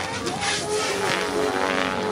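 OMP Hobby M4 electric radio-controlled helicopter flying aerobatics: its rotor and brushless motor make a steady, many-toned whine.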